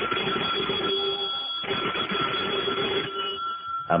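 An electric bell rings steadily, like an alarm or telephone bell used as a radio-drama sound effect. It comes through the dull, hissy sound of an old broadcast recording.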